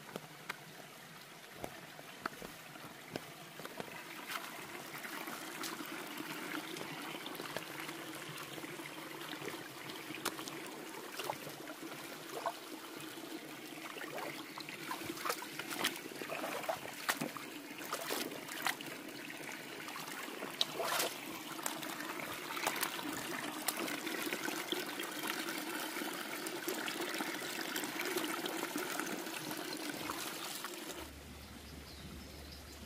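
Shallow rocky mountain stream trickling and running over stones, louder after the first few seconds. Scattered small splashes and clicks from feet in flip-flops stepping through the water.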